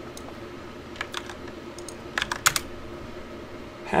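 Computer keyboard keystrokes: a few taps about a second in, then a quick burst of keys around two and a half seconds in.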